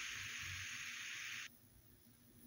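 Steady background hiss of a home recording, cutting off suddenly about one and a half seconds in.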